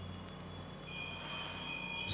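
A pause in the talk, with a low steady electrical hum from the microphone and sound system. About a second in, a faint, high, steady whistle-like tone comes in and holds.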